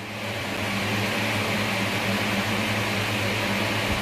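Steady room noise: an even electric motor hum with a hiss, like a running fan, rising a little just after the start and then holding level.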